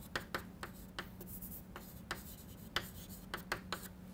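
Chalk writing on a chalkboard: a quick, irregular run of short taps and scratches as letters are written, over a faint steady low hum.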